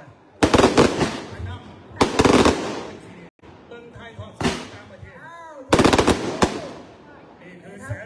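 Four loud bursts of rapid crackling, each lasting under a second: the burning fragments of a large black-powder bamboo rocket (bang fai) that has burst at launch, sputtering as they fall.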